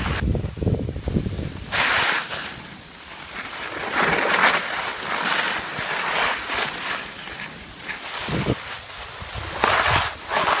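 Wind buffeting the microphone of a camera carried by a moving skier, with hissing scrapes of skis on packed snow. A low wind rumble fills the first second or so, then the scraping comes in surges about two seconds in and again from about four to six seconds in.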